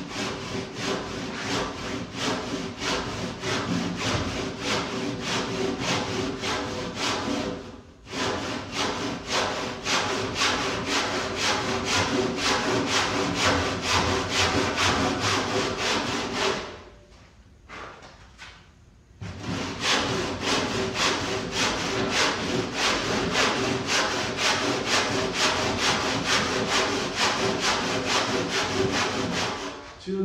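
Hand saw ripping down the grain of a timber rafter to cut a bridle-joint cheek, in quick, even back-and-forth strokes. There is a brief break about eight seconds in and a pause of about two seconds a little past halfway before the strokes resume.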